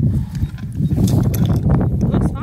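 Wind rumbling on a phone's microphone, with rustling and small clicks from handling a rocket's shock cord and parachute lines.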